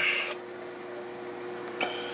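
Steady background hum in the room: two faint steady tones over a light hiss, with a small click near the end.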